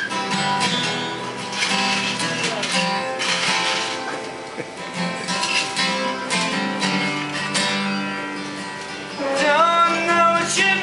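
Acoustic guitar strummed through a song's instrumental intro, with a harmonica playing sustained notes over it; near the end the harmonica notes bend up and down.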